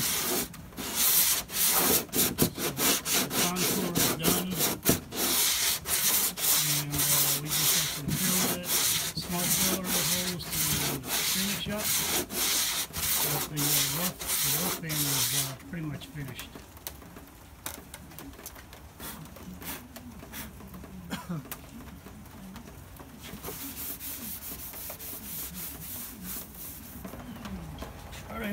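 Hand sanding with a wooden sanding block and coarse 60-grit sandpaper on a fibreglass-and-epoxy wing repair patch: quick back-and-forth rasping strokes, rough-sanding the filled patch down to the wing's contour. The strokes are loud for about the first fifteen seconds, then turn much lighter.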